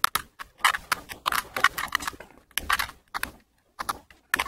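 3x3 Rubik's cube being turned by hand, its plastic layers clicking and rattling in quick irregular runs, with short pauses between moves.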